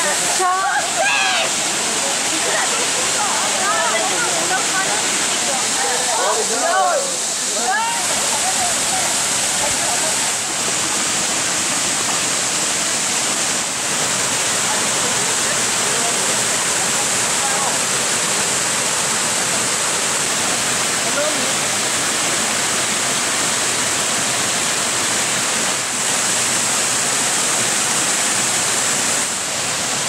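Waterfall cascading over limestone steps into a pool: a steady, loud rushing of water that holds even throughout.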